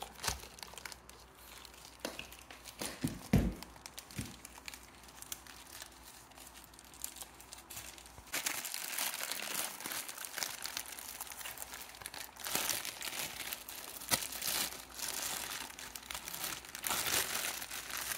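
A thin clear plastic bag crinkling and rustling as a cordless reciprocating saw is worked out of it, with the crackling getting louder and busier about halfway through. There is one dull thump about three seconds in.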